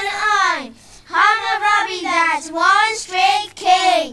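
First-grade children singing, with a short break about a second in.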